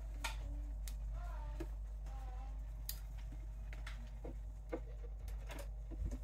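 Motorized display turntable slowly rotating a figure: a faint steady low hum with a few scattered light clicks.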